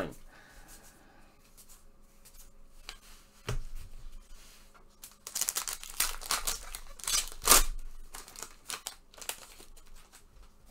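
A trading card pack's wrapper being torn open and crinkled, in a run of rips and crackles in the second half, loudest about three quarters of the way in. A dull knock comes a few seconds earlier.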